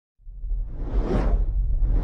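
Whoosh sound effect for an animated logo intro over a deep low rumble: a rush of noise swells up about a second in and fades away, and a second whoosh begins near the end.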